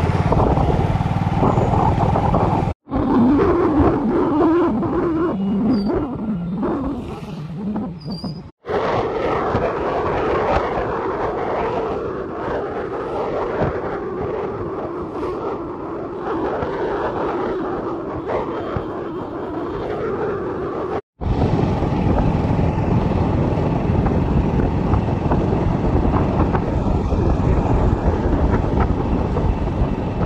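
Moving-vehicle ride noise: wind rumbling over the microphone with an engine running underneath. The sound cuts out abruptly for an instant three times.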